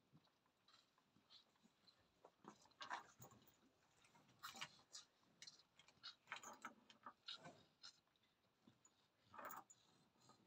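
Newborn calf suckling at its mother's teat: faint, irregular sucking and smacking sounds.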